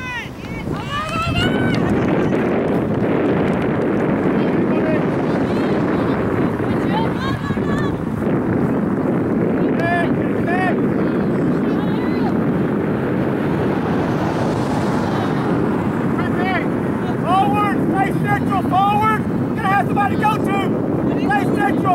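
Steady wind noise on the microphone, starting about a second and a half in and holding throughout. Scattered short shouts and calls from players and onlookers on the soccer field come through over it, more of them near the end.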